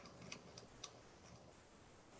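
Near silence with a few faint, irregular ticks from a computer mouse scroll wheel.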